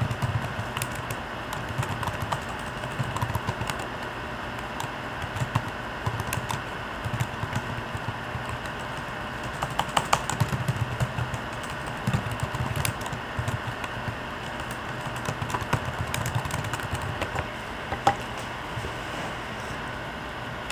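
Typing on a computer keyboard: uneven bursts of keystrokes with short pauses between them, over a steady low hum.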